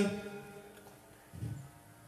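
A man's amplified voice through a microphone dying away at the end of a word, then near quiet with one brief faint low sound about one and a half seconds in.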